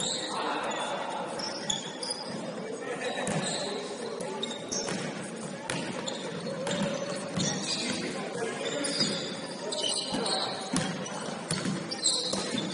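Indoor basketball game on a hardwood court: a basketball bouncing irregularly on the floor, short high sneaker squeaks, and players' distant voices, all ringing in a large gym hall.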